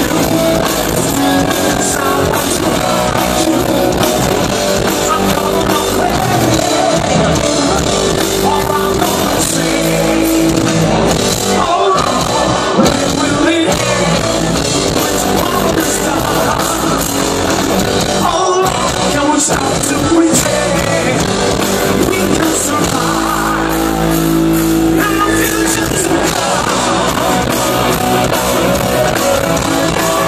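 Rock band playing live: electric guitars, drums and a male lead singer, recorded from within the crowd at a loud concert.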